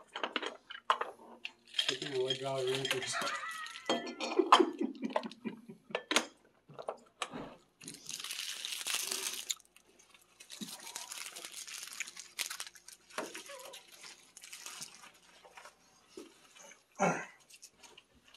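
Candy clattering and clinking against a clear candy jar as it is scooped out by hand, in many short rattles with stretches of rustling, and a voice briefly early on.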